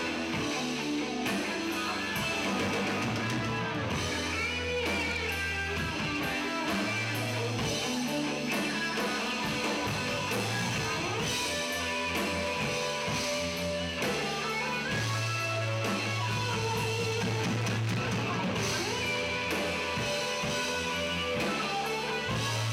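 Live rock band playing: electric guitars over a drum kit, with held low notes changing every few seconds and steady cymbal and drum strokes.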